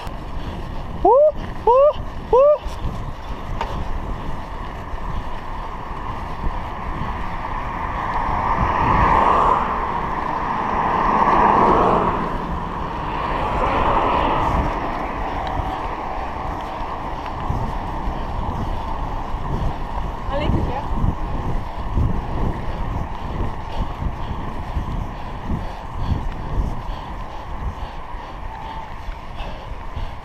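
Steady wind rush on a bicycle-mounted action-camera microphone, with rolling road rumble as the bike rides along a paved street. Three short rising tones come in the first few seconds. Louder swells of noise rise and fall a third of the way through.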